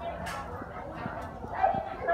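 Indistinct background voices of people and children, with a brief louder call about one and a half seconds in.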